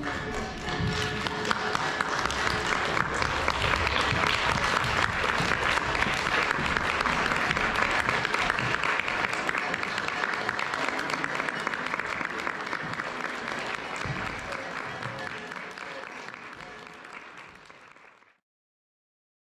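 Audience applause: dense, steady clapping that builds in the first second and fades out over the last few seconds.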